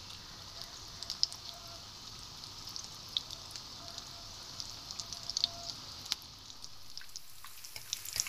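Besan-battered potato balls deep-frying in hot oil: a steady sizzle with scattered crackling pops.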